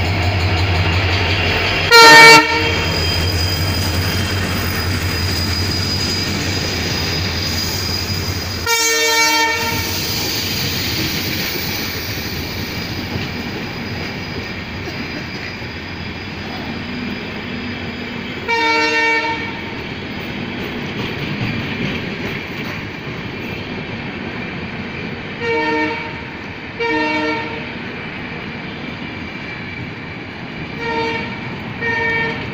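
Diesel-hauled passenger train rolling past a platform. The locomotive's engine hum is heard in the first several seconds, then the coaches roll by with a steady wheel-on-rail din. The train horn sounds in short blasts: a loud one about two seconds in, a longer one about nine seconds in, another near nineteen seconds, and two brief ones near the end.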